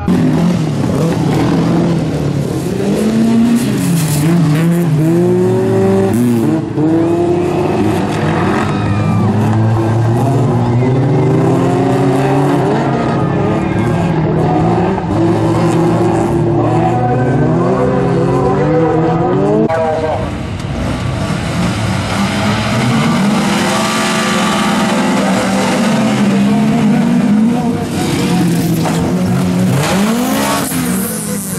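Several bilcross race cars' engines revving hard at full throttle, pitch climbing and dropping again and again as the drivers shift gears and lift for corners, with tyre noise on the loose surface.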